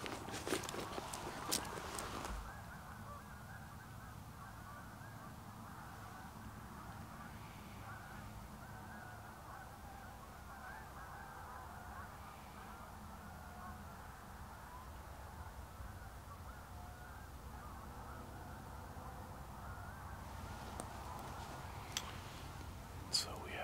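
A large flock of geese honking in the distance, a steady overlapping chatter of many calls. A few sharp clicks sound in the first two seconds.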